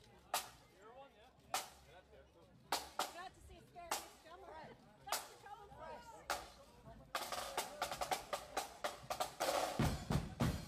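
Marching-band drum tapping once a little over every second to keep time, with voices chattering between the taps. About seven seconds in, snare drums break into rapid rolls, and near the end a bass drum comes in as the band strikes up.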